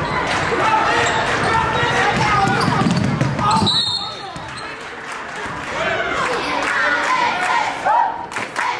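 A basketball bouncing on a hardwood gym floor during play, under shouting voices from players and spectators.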